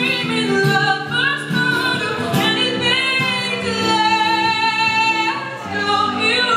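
A woman singing a song live, accompanied by an acoustic guitar; she holds one long note about halfway through.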